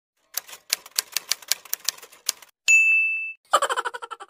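Typewriter sound effect: about two seconds of rapid key clacks, then a single bell ding that rings out for about half a second. A quick run of short pitched blips follows near the end.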